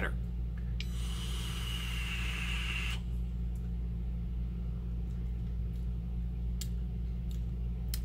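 A draw on a vape, about two seconds of steady hiss of air and vapour pulled through the device, starting about a second in, over a steady low electrical hum.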